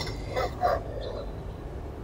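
Steady low room hum with two brief faint sounds about half a second in.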